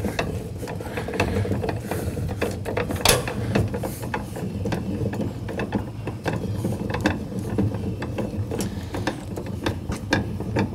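Hand-cranked trailer tongue jack being wound, its gears clicking steadily as the jack lowers its wheel to the ground and lifts the trailer tongue off the hitch ball.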